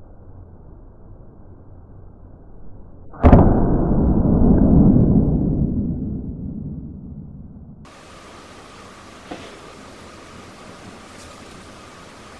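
An air rifle shot with a .22 pellet: a sharp crack about three seconds in, followed by a loud, muffled low rumble that fades away over about four seconds.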